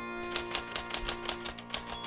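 Typewriter keys striking: a quick, uneven run of about eight sharp clicks as the title is typed out, over background music.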